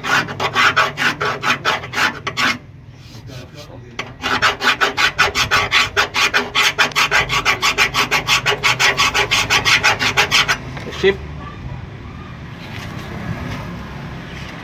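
Sandpaper rubbed by hand in quick, even back-and-forth strokes against the underside of a truck body, in two runs with a short break between them. It stops a little after ten seconds, followed by a single knock. This is abrading the surface clean so that a stick-on LED underbody lamp will adhere.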